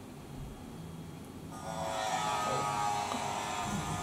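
A woman's long, steady held vocal sound of delight, starting about one and a half seconds in and not breaking into words.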